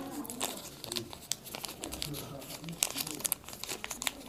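A small packaging wrapper being handled and pulled open by hand, with irregular crinkling and sharp little crackles.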